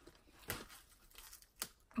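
Fingers pressing and prying at the battery compartment of a Possible Dreams Santa figurine, which will not open by pushing. Two small clicks, about half a second and about a second and a half in.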